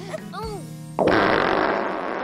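Cartoon fart sound effect: a sudden loud, airy burst about a second in that fades away over about a second and a half. Light background music and a short baby giggle come before it.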